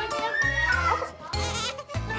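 A baby crying in wavering, bleat-like wails over background music with a steady low beat.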